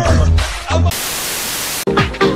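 Music with a heavy bass beat and sung voice for about the first second, then a burst of flat static hiss for about a second that cuts off abruptly as disco music begins at the end.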